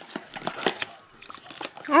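A small cardboard advent calendar box being opened by hand: a quick run of light clicks and scraping card as the lid is worked off in the first second, then softer rustling of the packaging.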